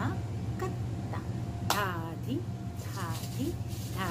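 A woman's voice in short spoken syllables, the tabla bols being recited, over a steady low hum.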